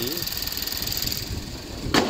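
Ford Duratec 2.0 L four-cylinder petrol engine idling quietly and smoothly with the bonnet open. Near the end the bonnet comes down and shuts with one sharp bang.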